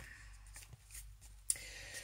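Faint rustling of paper being handled, with a soft click about one and a half seconds in.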